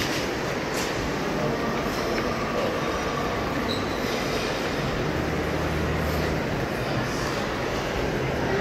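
Steady ambient noise of a busy indoor lobby: an even rumble and hiss with no clear voices, and a low hum from about five to seven seconds in.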